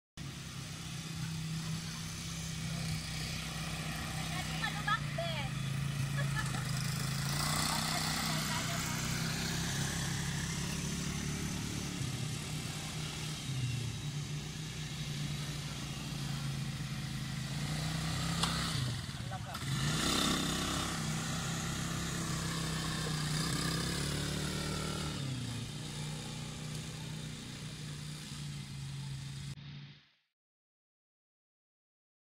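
Small quad-bike (ATV) engine running at varying speed, its note stepping up and down as the throttle is opened and eased, heard from across the field.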